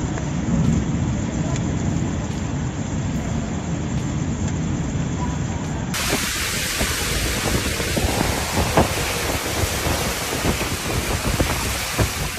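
Violent storm recorded on a phone: heavy rain and hail with strong wind buffeting the microphone in a low rumble. About halfway through it cuts to another recording of driving rain in gale-force wind, with sharp knocks scattered through it.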